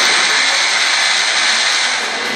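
Audience applauding, a dense steady clatter of many hands.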